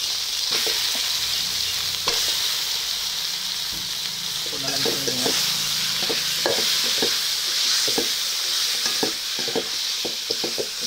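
Raw chicken pieces sizzling as they fry in hot oil in a metal kadai, with a steady hiss throughout. A perforated metal skimmer stirs them and knocks and scrapes against the pan several times, more often in the second half.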